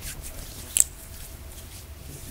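A person's hands rubbing together, palm against palm, in faint strokes, with one brief sharp swish about a second in as the loudest sound.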